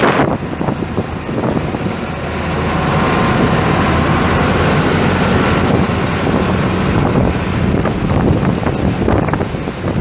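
John Deere 8820 Turbo combine's turbocharged six-cylinder diesel engine running steadily. About two to three seconds in it grows louder, with a whine, and holds there. Wind on the microphone.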